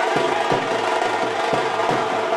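Dappu frame drums beating a steady rhythm, about three strokes a second, over a dense layer of other music.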